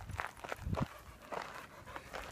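Footsteps on a gravel path: a walker's short, uneven steps, a few to the second.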